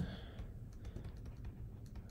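Faint, scattered light clicks and taps of a stylus writing on a tablet screen.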